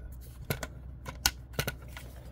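Hard plastic toy starship being handled: a few short, sharp plastic clicks and taps as its parts knock and shift in the hands.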